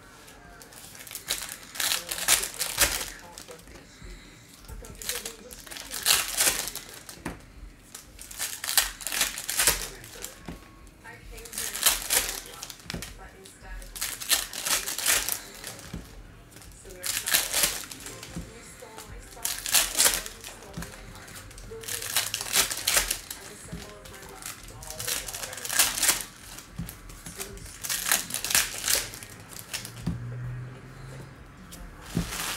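Foil wrappers of Panini Donruss Optic basketball card packs being torn open and crinkled, one pack after another, in bursts every two to three seconds.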